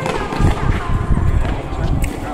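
Indistinct voices of people talking, over a loud low rumbling noise.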